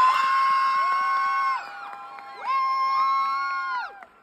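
Several people cheering with long, high-pitched whoops. There are two drawn-out shouts, each rising, held and then dropping off; the second one breaks off near the end.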